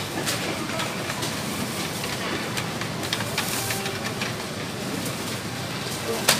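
Supermarket background noise: a steady hiss with faint distant voices and scattered light clicks and knocks.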